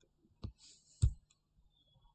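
Two faint computer mouse clicks about half a second apart.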